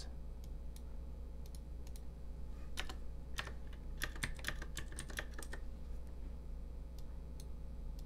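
Typing on a computer keyboard: a few scattered keystrokes, then a quick run of keys about four to five and a half seconds in as a number is entered into a spreadsheet-like table. A low steady hum sits underneath.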